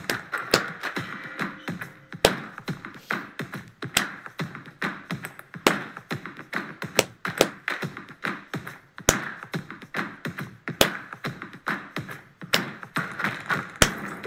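Layered hand claps and tapped percussion sounds in a steady clap-along rhythm pattern, about two a second, with louder accented claps every few beats, over music.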